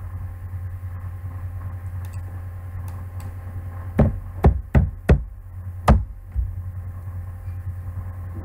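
Five sharp clicks from a computer mouse and keyboard, spread over about two seconds near the middle, over a steady low electrical hum.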